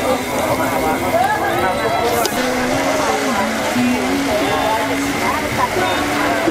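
Indistinct background voices and music, with one short sharp clack about two seconds in.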